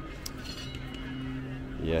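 A man's voice holding a long, steady hesitant 'mmm' while he thinks, then starting to speak again near the end.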